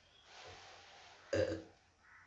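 A man's short, throaty vocal sound, like a small burp, about one and a half seconds in, after a soft rustle of the textbook being moved on the table.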